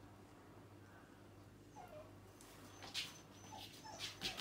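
A young dog whimpering faintly, with short falling whines near the middle and twice near the end. A single sharp click about three seconds in is the loudest sound.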